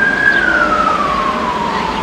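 Emergency vehicle siren wailing: one slow tone that peaks just after the start and then falls steadily.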